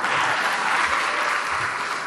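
Audience applauding, a steady clatter of many hands clapping.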